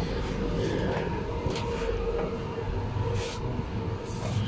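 Steady mechanical hum and rumble with a held mid-pitched tone, broken by a few brief rustles or knocks.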